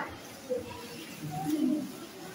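Faint cooing of a pigeon: a few short, low calls, about half a second in and again around one and a half seconds in.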